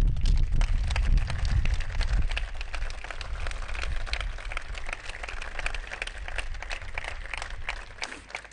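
Crowd applauding, many hands clapping densely. The applause is loudest in the first two or three seconds and then eases off.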